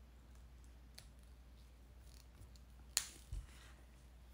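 Quiet room tone broken by a sharp click about three seconds in, followed closely by a soft thump: a felt-tip marker being handled.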